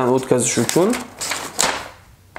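A folded sheet of paper being opened out by hand, giving a crisp rustling and crackling about a second in.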